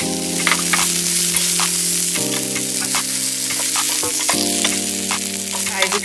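Boneless chicken thigh pieces sizzling as they fry in a non-stick skillet: a steady hiss with scattered small crackles.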